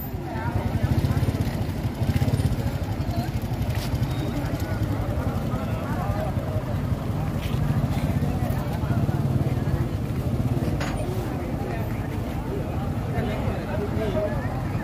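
A large engine running steadily with a low, even rumble, under the chatter of a crowd of onlookers, with a few brief clicks.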